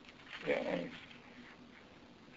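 A brief, soft, muffled vocal murmur from a man, about half a second in, in an otherwise quiet room.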